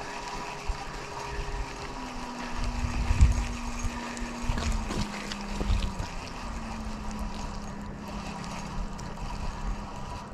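Wind buffeting the microphone, loudest about three seconds in, over a distant engine humming at a steady pitch. The hum steps up about two seconds in and settles lower a little later.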